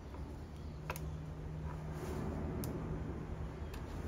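A screwdriver clicks faintly against the small linkage screws of an outboard's carburetor three times, spaced unevenly, while the left-hand-thread linkage screws are loosened. A steady low hum runs underneath.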